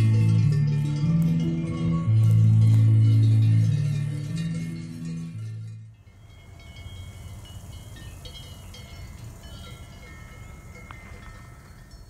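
Electronic keyboard (Yamaha MOXF) music with slow, held low notes and bell-like tones, fading and cutting off about six seconds in. After that only a quiet hiss with faint high ringing tones remains.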